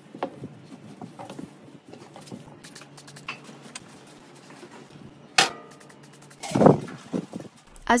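Cloth rubbing and wiping over a stainless steel stove top, with faint scattered clicks. A sharp click comes about five seconds in, and a louder knock follows a second later.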